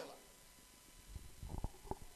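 A pause between spoken phrases: near silence for about a second, then a few faint low thumps and soft knocks close to the microphone.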